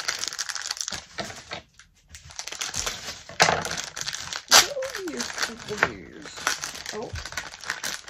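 Thin plastic blind-bag packaging crinkling and rustling as it is pulled open and handled, in irregular crackles with a few sharper, louder ones a little past the middle.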